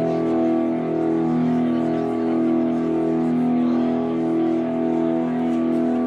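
Ambient drone music: a sustained low chord of layered steady tones, its middle tones swelling and fading in a slow pulse.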